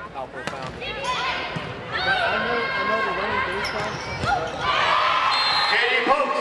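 Volleyball rally: a few sharp smacks of the ball being served and played, under players and spectators shouting and cheering, the shouts getting louder and denser near the end.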